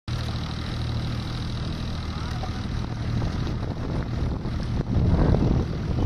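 An engine running with a steady low drone; from about five seconds in the sound grows louder and rougher.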